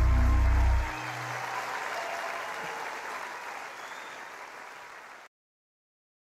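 The last ringing chord of a live band stops about a second in, and audience applause follows, dying away gradually before cutting off abruptly to silence about five seconds in.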